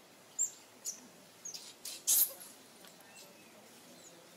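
A run of short, high-pitched animal chirps or squeaks, about five in the first two and a half seconds, the loudest a little after two seconds in.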